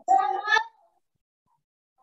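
A brief pitched vocal sound, under a second long, right at the start.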